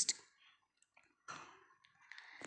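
A quiet pause with a few faint clicks and a short, soft burst of noise about a second and a half in.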